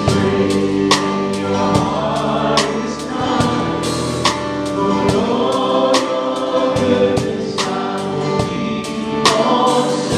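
Live worship band playing a song: a drum kit keeping a steady beat with cymbal hits, under bass guitar, keyboard and acoustic guitar, with voices singing over it.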